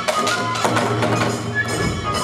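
Kagura hayashi accompaniment to the dance: drum strokes and clashing hand cymbals beat a quick rhythm of several strokes a second under a flute melody.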